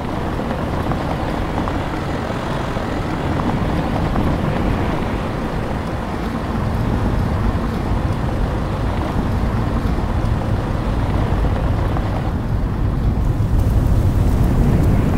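Wind rushing over the microphone mixed with the low rumble of a moving SUV on a rough mountain road. It is a steady noise with a heavy low end that grows slightly louder partway through.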